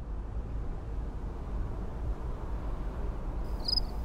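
Steady low rumble, joined about three and a half seconds in by short high chirps repeating evenly about two to three times a second.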